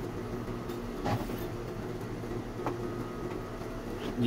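Steady mechanical hum in a small workroom, with two short rustles of cloth being handled, about a second in and again later.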